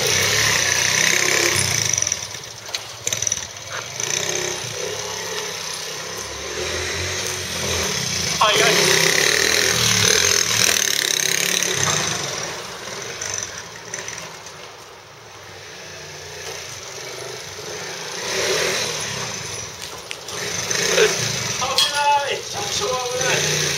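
A Honda Magna 50's small single-cylinder four-stroke engine, bored up with a Daytona cylinder, running as the bike is ridden around. It fades as the bike moves off mid-way and grows louder again as it comes back near the end.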